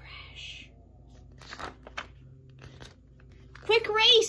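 A paper page of a hardcover picture book being turned by hand: a soft rustle, then a couple of light crinkles about a second and a half in.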